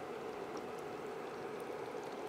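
Faint, steady hiss of background noise with a low hum, with no distinct event in it.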